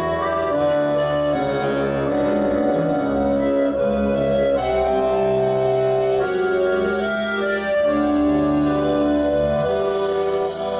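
Chromatic button accordion playing a slow melody over held chords, the notes changing about once a second.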